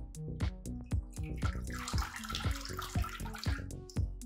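Water splashing and dripping back into the AeroGarden Bounty's basin as its grow deck and pump tower are lifted out, for about two seconds in the middle. Background music with a steady beat plays throughout.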